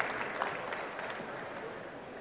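Audience applause in a large hall, the clapping thinning out and fading away.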